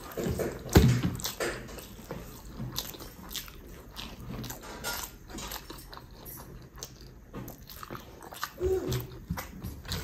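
Close-up mouth sounds of a person eating rice and egg curry by hand: wet chewing and lip smacks with many small clicks. A louder low thump comes about a second in.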